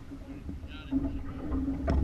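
Low wind rumble on the microphone over a steady hum aboard a small boat, with a sharp knock near the end.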